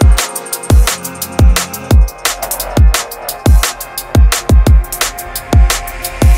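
Drum and bass music from a DJ mix: a fast, driving beat of deep kicks, snares and hi-hats, with a sustained sub-bass line coming in about two seconds in.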